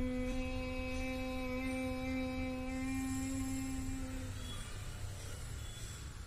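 A boy humming one long, steady 'mmm' through closed lips in bhramari (humming-bee breath) pranayama. The hum holds one pitch and dies away about four and a half seconds in.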